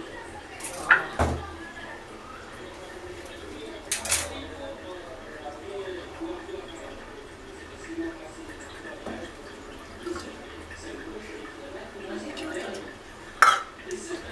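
A few sharp clinks and knocks of kitchen utensils and dishware on a counter: three close together about a second in, one about four seconds in and one near the end, with quiet handling between.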